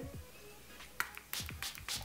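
A small pump-spray bottle of face mist spritzed several times in quick succession in the second half: short hissing puffs, each with a light click of the pump.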